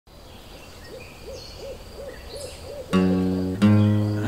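A bird's low hooting call repeated about six times at an even pace, with faint higher birdsong behind it. About three seconds in, louder acoustic guitar chords come in.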